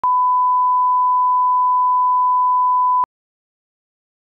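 Video test tone played with colour bars: one steady pure beep at the standard 1 kHz line-up pitch, held for about three seconds, then cutting off suddenly.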